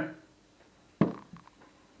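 A plastic tub set down on a table: one sharp knock about a second in, followed by a few light clicks.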